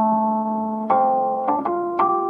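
Slow, sad-sounding instrumental music: pitched notes plucked or struck and left to ring and fade, with a new note about a second in and two more close together near the end.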